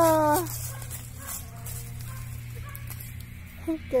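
A woman's drawn-out, sung-out exclamation, "oh la la", trails off in the first half second. Then there is a steady low hum with a few faint small sounds, and her speech starts again just before the end.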